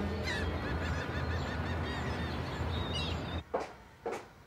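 Gulls calling over a steady low rumble. The ambience cuts off abruptly near the end, followed by a single knock.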